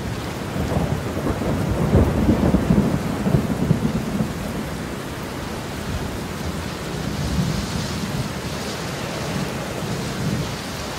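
Steady rushing noise with a low rolling rumble, loudest about two to four seconds in and easing after, an ambient sound track that fades in just before.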